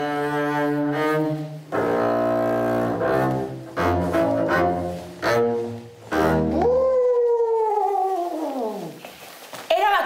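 Double bass played with the bow (arco), a slow, heavy line of separate low notes meant to imitate an elephant's walk. About seven seconds in the bass notes stop and a long sliding sound falls steadily in pitch. A short burst of voice comes right at the end.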